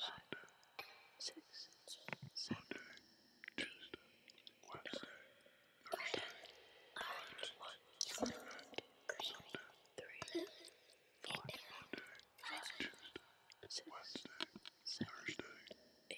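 A person whispering, in breathy word-like bursts with short clicks in between.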